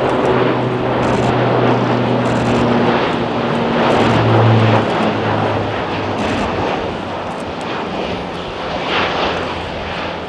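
Lockheed C-130J Super Hercules transport's four turboprop engines and propellers droning loudly in a low flyby. The propeller hum drops in pitch as the aircraft passes, loudest about halfway through, then fades slightly.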